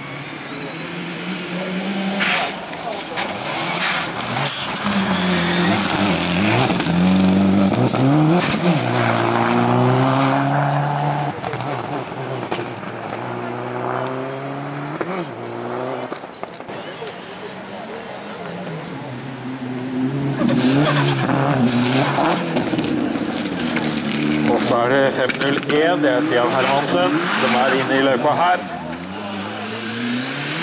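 Hillclimb race cars accelerating up a gravel course. A Subaru Impreza WRX STI's turbocharged flat-four climbs in pitch and drops back several times as it shifts up through the gears, then fades. About twenty seconds in, a second car comes up with its engine revving hard and rising and falling quickly.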